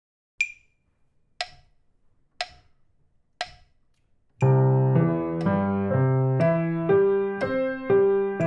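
Metronome clicking at 60 beats per minute, four clicks a second apart as a count-in. About four and a half seconds in, a piano comes in playing a C major arpeggio with both hands over two octaves in eighth notes, two notes to each click, with the metronome still clicking beneath.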